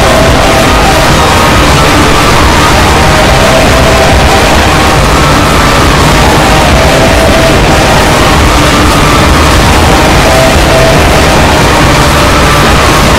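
A loud, unbroken cacophony of many clips' soundtracks (cartoon voices, music and effects) playing on top of one another, blurred into a steady noise-like wall with faint tones running through it.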